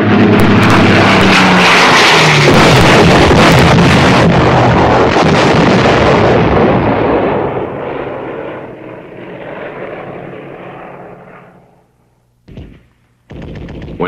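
A propeller fighter-bomber diving low overhead, its engine drone mixed into a dense roar of explosions and gunfire. The din is loudest in the first few seconds, then fades away over the next several, and two short bursts come near the end.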